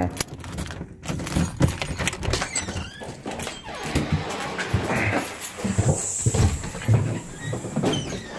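Irregular low thumps about every half second, with clicks: footsteps and handling knocks on a phone carried while walking through a house.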